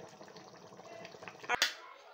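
Faint bubbling and crackling of a pot of soup at a simmer, then a single sharp knock about one and a half seconds in.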